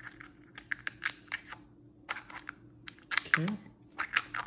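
Wrapped Starburst candies clicking against each other and the thin plastic of an Easter egg as they go in. Near the end comes a cluster of louder plastic clicks as the two egg halves are pushed shut, over a faint steady hum.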